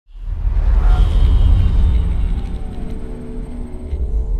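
Dark cinematic intro music over a deep bass rumble, swelling in within the first half-second, with a falling whoosh about a second in.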